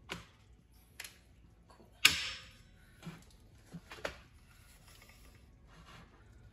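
A few scattered clicks and knocks of metal parts being handled as a dirt bike's front wheel is fitted between the fork legs and its axle put in place. The loudest is a sharp clack about two seconds in.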